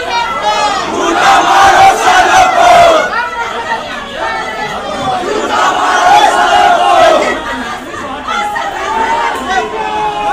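A crowd of men shouting and yelling over one another, with several long drawn-out yells rising above the din.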